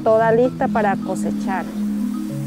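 Short bursts of people's voices, with no clear words, over steady low held tones of background music.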